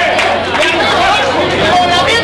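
Boxing arena crowd: many voices shouting and talking over one another at once.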